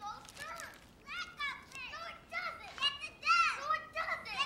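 Children's high voices calling out and shrieking as they play, several short cries overlapping.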